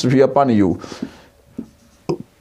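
A marker pen writing on a whiteboard: a short scratchy stroke about a second in, then a few faint taps and ticks of the tip, after a man's voice in the first part.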